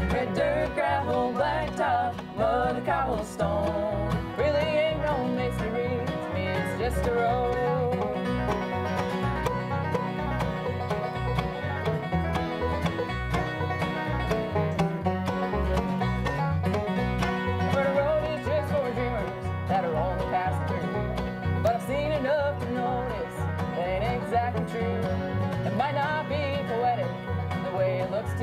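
Live acoustic bluegrass band playing an instrumental stretch: banjo and bowed fiddle carry the melody over acoustic guitar and a steady plucked bass beat.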